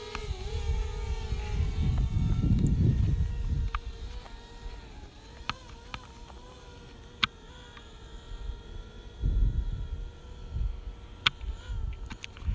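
Quadcopter drone in flight, its propellers giving a faint steady hum. Wind buffets the microphone with a low rumble through the first few seconds and again about nine seconds in. There are a few sharp clicks.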